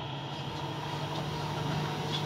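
Quiet lull with a low, steady hum over faint background noise, the band not playing.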